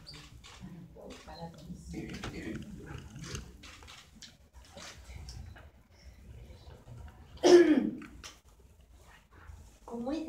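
Low murmur of people talking quietly in a small meeting room, with one sudden loud vocal burst close to the microphone about seven and a half seconds in.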